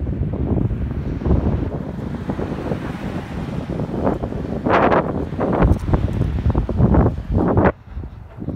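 Wind buffeting a phone microphone, a heavy rumble that swells in gusts, strongest in the second half and dropping away suddenly near the end.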